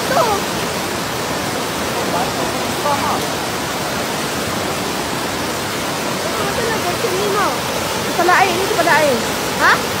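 A swollen, muddy river in flood rushing past, a steady, loud noise of fast water. Voices call out over it at the start and more often in the last few seconds.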